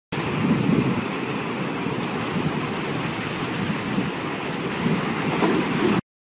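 Intro animation sound effect: a steady rushing noise with irregular low swells, like wind or surf, that cuts off suddenly at the end.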